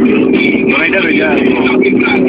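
Cabin sound of a Mazda 323 1.5 16V four-cylinder engine running steadily at cruising speed, with road noise under it. A voice from the car stereo plays over the top.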